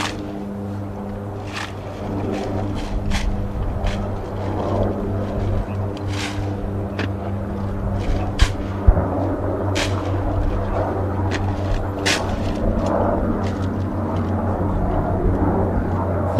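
Sharp slaps and clicks from a silent drill platoon handling M1 Garand rifles, coming at irregular intervals a second or two apart, with two louder ones close together about halfway through. Under them runs a steady low hum.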